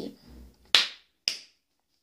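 Two sharp cracks made with the hands, about half a second apart, each dying away quickly.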